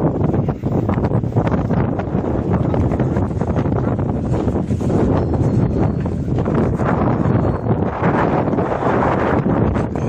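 Wind buffeting a phone's microphone: a loud, unsteady rushing rumble that never lets up.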